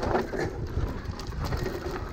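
Electric mountain bike running down a dirt forest trail: a steady rumble of tyres on dirt and wind on the microphone, with light knocks and rattles from the bike.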